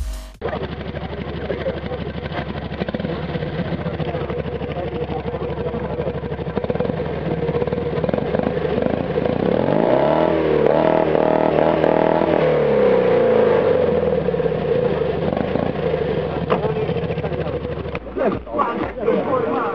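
Fiat 126p's small air-cooled two-cylinder engine running, revved up about halfway through, held for a few seconds and then let fall back to a steady run.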